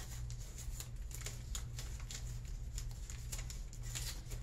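Faint rustling and scattered small clicks of someone rummaging through packing supplies, searching for sticker seals, over a steady low hum.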